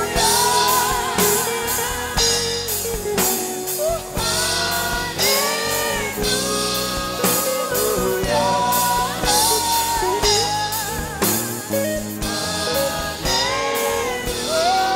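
Live gospel worship song: a male lead singer sings a melody with vibrato into a microphone, backed by a choir and a band with regular drum hits.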